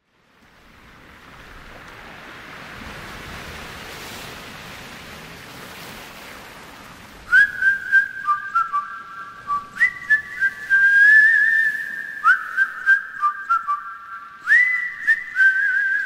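Ocean surf washing up on the beach fades in, then about seven seconds in a man starts whistling a slow melody over it, with held notes and short slides between them.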